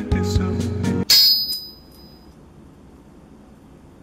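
Music stops abruptly about a second in and is replaced by a sharp, high metallic ding that rings out and fades over about a second. Only a faint hiss follows.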